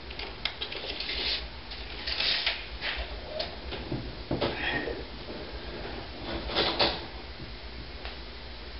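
Tape measure being handled and pulled against wooden wall framing to take a measurement: scattered clicks and a few short scraping rattles, the clearest about two seconds in and again near the end, over a low steady hum.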